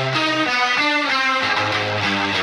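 Rock music opening with an electric guitar riff whose notes slide down in pitch, over a low held bass note.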